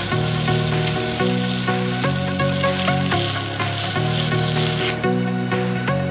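Stick (MMA) welding arc crackling steadily on steel for about five seconds, then cutting off as the arc is broken. Electronic dance music with a steady beat plays throughout.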